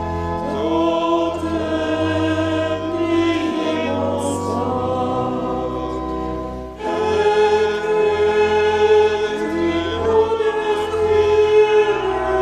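Choir singing a slow hymn in long held chords, with a short break about seven seconds in before the next phrase begins.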